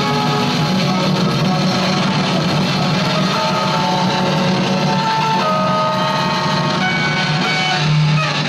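Free noise improvisation: an electric guitar and floor-mounted effects pedals and electronics make a loud, dense wash of noise over a steady low drone. Held higher tones come in about halfway through and overlap.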